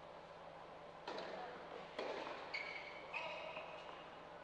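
Tennis ball struck by racquets on an indoor court, echoing in the hall: a serve about a second in and a hard hit about a second later, followed by two short high-pitched squeals.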